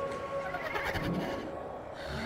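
Raspy, throaty zombie creature vocalizing, strongest from about half a second to just past one second in, over a steady held tone.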